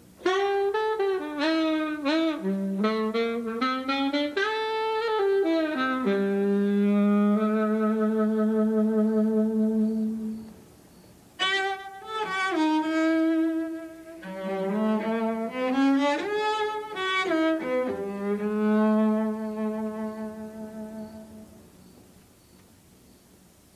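A saxophone plays a slow blues phrase with long vibrato notes, and after a brief pause a bowed cello answers with a similar phrase, ending on a long held low note.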